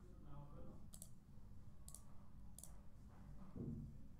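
Three sharp computer mouse clicks about a second apart, over a low steady hum.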